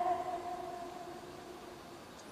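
A woman's unaccompanied held sung note, one steady pitch, fading away over about the first second and a half.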